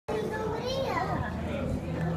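Indistinct chatter of several visitors' voices, some high-pitched like children's, over a steady low hum.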